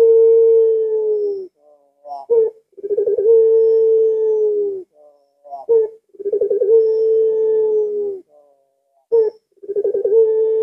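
Puter pelung (ringneck dove) cooing: about three coos, each a short clipped note followed by a long, deep held note of about two seconds that sags slightly in pitch, repeating every three to four seconds.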